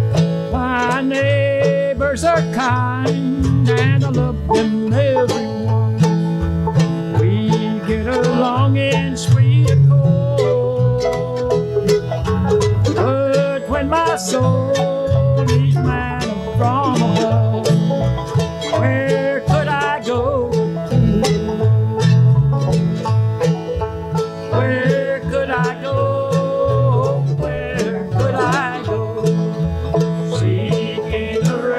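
Bluegrass band playing: banjo picking, mandolin and acoustic guitar over a plucked upright bass line, at a steady lively tempo.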